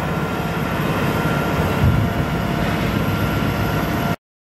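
Komptech Terminator xtron mobile shredder running under load, its Caterpillar diesel engine and shredding rotor making a steady, loud mechanical noise as it grinds waste wood.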